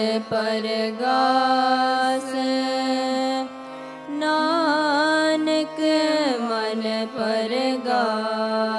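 Sikh kirtan: a shabad sung in raag Sri with harmonium accompaniment, with long held notes and wavering vocal ornaments. There is a brief softer moment about halfway through.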